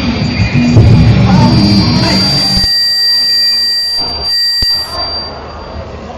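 Live band music played over a PA, cutting out suddenly about halfway through. A thin, steady high tone lingers after it, with a single sharp click shortly before the end.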